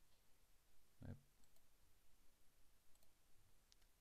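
A few faint, scattered computer mouse clicks in a near-silent room.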